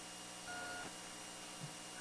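A faint short electronic beep about half a second in, a steady tone with a higher overtone, over quiet room tone.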